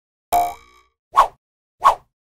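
Cartoon sound effects as an animated title appears: a short pitched ringing sound that dies away quickly, then two quick pops about two-thirds of a second apart.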